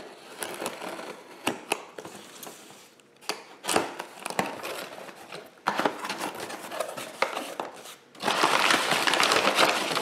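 A knife slitting the packing tape on a cardboard shipping box, with scratching and scattered clicks as the flaps are worked open. Then kraft packing paper is handled and crinkles, loudest over the last two seconds.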